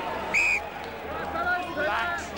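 A referee's whistle gives one short, steady blast about half a second in, blown at a tackle on the ground, over the steady noise of a stadium crowd.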